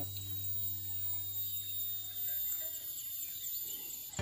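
Insects droning steadily in open country, a thin high-pitched buzz with faint regular pulses, over a faint low hum.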